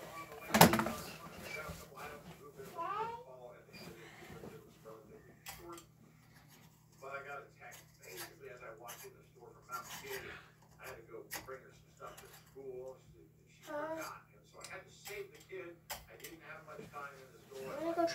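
A loud thump about half a second in as someone climbs onto a bed, then quiet talking broken by scattered small clicks from the ceiling fan's light pull chain, over the fan's steady low hum.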